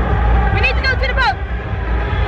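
A woman's voice speaking briefly over a steady low rumble and crowd noise, her pitch falling at the end.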